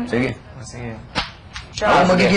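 A single sharp click a little over a second in, between short stretches of speech.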